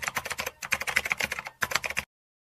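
Rapid computer-keyboard typing clicks, a typing sound effect laid under text being typed out on screen, broken by two brief pauses and cutting off suddenly near the end.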